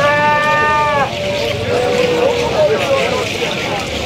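Kougang dance music: a single high note held for about a second at the start, then wavering chanted voices, over a continuous rattling hiss.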